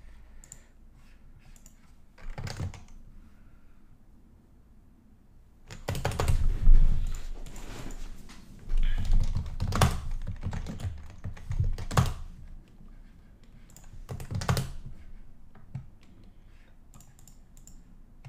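Typing on a computer keyboard: spells of key clicks and heavier keystroke thumps separated by pauses of a second or two, the loudest spell about six to seven seconds in.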